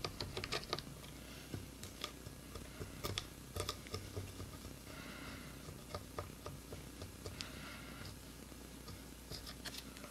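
Medium-gauge plastic guitar pick scraping at a sticker softened with Goof Off on a bass guitar body: faint, scattered small clicks and short scratchy rasps, the clearest about halfway through and again a couple of seconds later.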